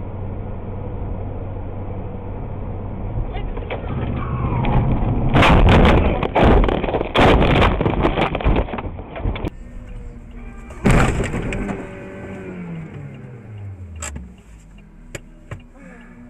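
Car crash heard from a dashcam: steady driving and road noise, then about five seconds in a run of loud impacts and crunching lasting some four seconds, with another sharp bang near eleven seconds. After that a falling tone and a few clicks.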